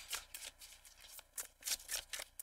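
A tarot deck shuffled by hand, overhand style: a quick, irregular run of soft card flicks and rustles, a little louder near the end.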